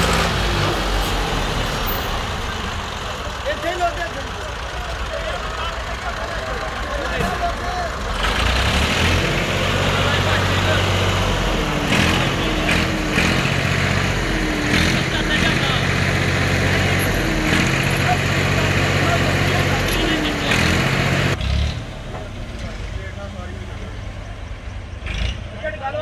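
Farm tractor's diesel engine running close by, its pitch and loudness rising and falling with the throttle through the middle stretch, then dropping to a quieter run about 21 seconds in.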